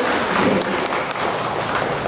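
An audience applauding.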